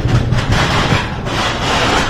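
Mini Mine Train roller coaster cars rolling along their track into the station, a steady rushing noise that grows louder about half a second in.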